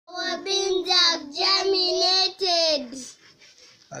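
Young children singing in short phrases of held, gliding notes, which stop about three seconds in.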